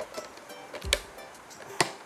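Two sharp plastic clicks with a light knock, about a second apart, as the lid and feed-tube pusher of a food processor are fitted into place, over faint background music.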